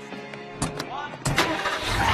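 Cartoon sound effects of a pickup truck: a couple of light clicks, a loud thump about a second and a quarter in, then the truck's engine starting near the end and running.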